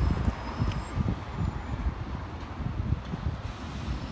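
Wind buffeting the microphone in irregular gusts over the steady noise of road traffic passing nearby.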